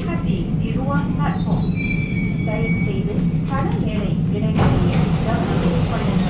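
Bombardier Movia C951 metro train running into a station, heard from inside the carriage as it comes to a stop. A steady low hum runs under a high squeal that glides in pitch about two seconds in, and a louder rush of noise comes near the end.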